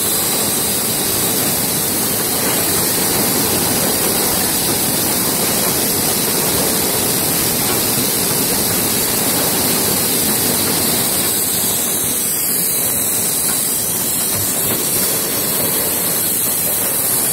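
Steady, loud hiss and rush of factory machinery noise, even throughout, with no distinct knocks or rhythm.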